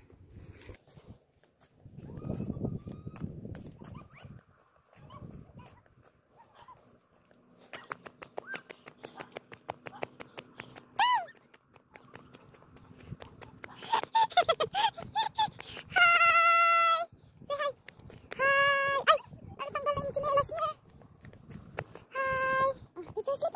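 A young child's high-pitched calls and shouts in the second half, including a few long held calls. Before them there is a quieter stretch with light clicking.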